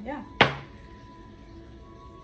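A single sharp hand clap about half a second in, over a faint steady thin tone.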